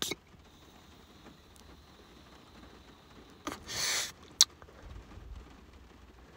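A long, quiet draw on a disposable THCA vape pen: a click, then a faint, steady, high whistle of air through the device for about three seconds, ending in a short rush of breath and a sharp click.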